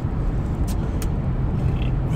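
Steady road and engine noise heard inside a car cabin while driving on a highway, with two faint short ticks just under a second in.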